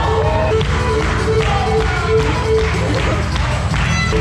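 A live Greek folk band playing a dance tune with a repeated melodic phrase over a steady beat.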